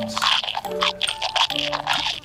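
Crunching of mints being chewed, dense through the first second or so, over background music.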